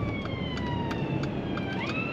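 Ambulance siren wailing: a long tone slides slowly down in pitch, then sweeps sharply back up just before the end.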